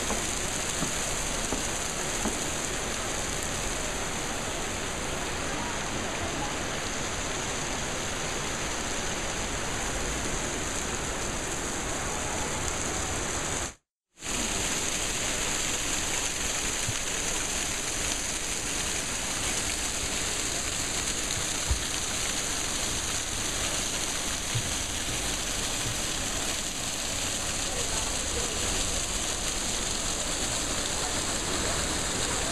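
Hot spring water running and splashing in a steady rush. The sound cuts out completely for a moment a little before halfway through.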